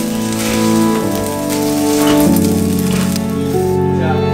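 Background instrumental music with sustained, slowly changing notes, over the hiss of rice sizzling as it is stir-fried in a frying pan; the sizzle stops near the end.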